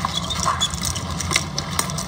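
Steady rushing of fast river current with a deep rumble, with a few short clicks over it.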